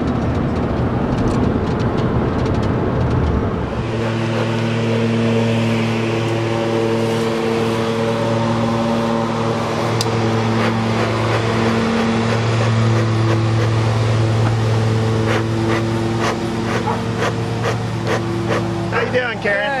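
Road noise inside a moving truck cab for the first few seconds. Then a vehicle engine idling with a steady low hum, with a few light clicks near the end.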